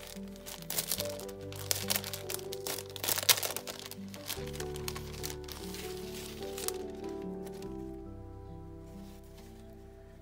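Clear plastic packaging crinkling as a pack of paper doilies is handled, over soft background music of held chords. The crinkling is busiest in the first few seconds and dies away after about seven seconds, leaving the music to fade.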